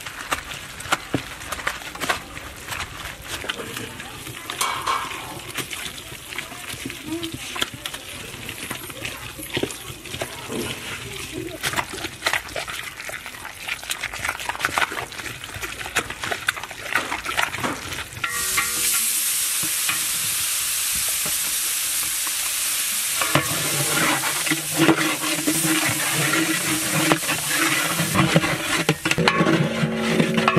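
Masala of dried red chillies, shallots and garlic being ground on a flat stone grinding slab with a hand-held stone roller: rough, repeated scraping and crushing strokes. About eighteen seconds in, this gives way to a steady sizzling hiss of frying that lasts to the end.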